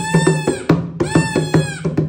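Two high blasts on a pink plastic toy horn, each just under a second long, blown by a small child. Under them runs a steady drum beat of about four strikes a second.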